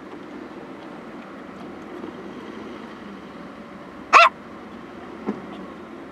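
A dog's single short yelp about four seconds in, rising sharply in pitch, over the steady low hum of a car cabin with the car standing still; a fainter short sound follows about a second later.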